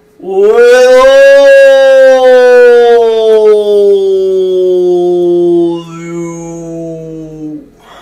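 A man's voice holding one long, wordless sung tone. It rises slightly at the start, then slides slowly lower for about seven seconds, turns quieter for the last couple of seconds, and cuts off.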